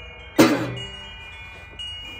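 Resonator (dobro) guitar: one sharp strummed chord about half a second in that rings out and fades, with high tones ringing on afterwards.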